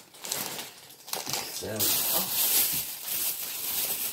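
Thin plastic grocery bags crinkling and rustling as items are handled in them, louder and fuller through the second half.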